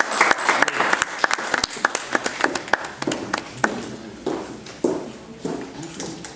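Scattered, irregular hand clapping from a small audience, densest in the first two seconds and thinning out after about three, with some low murmured voices.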